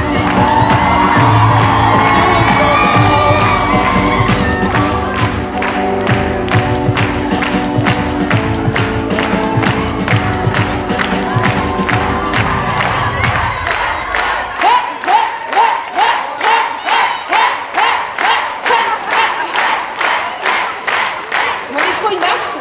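Loud music with a heavy bass line and an audience clapping along in time. A little past halfway the music fades out, and the crowd keeps up steady rhythmic clapping, about two claps a second, with cheering and shouts.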